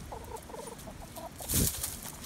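Brown hen clucking in a quick run of short low clucks, followed about a second and a half in by a brief loud rustling noise.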